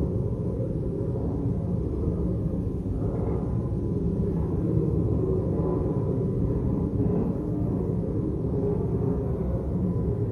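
Low, steady murmur of many quiet conversations in a large chamber, with no single voice standing out.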